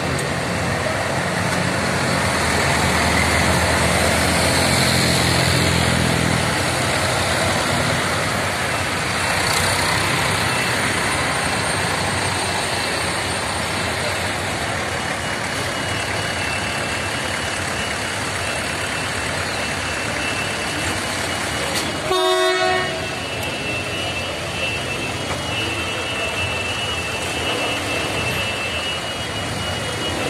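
Several farm tractors' diesel engines running together in a slow-moving convoy, the low engine note strongest in the first several seconds. A short horn toot sounds about two-thirds of the way through.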